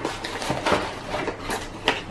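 A tall cardboard gift box being handled and tipped over, giving several light knocks and rustles.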